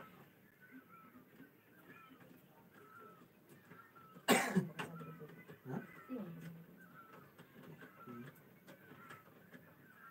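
A person coughs once, sharply, about four seconds in, followed by a few faint low vocal sounds. Faint short chirps repeat in the background throughout.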